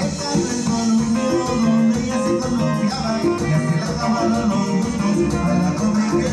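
Live dance band playing an instrumental stretch of Latin dance music, guitar over a steady bass and beat.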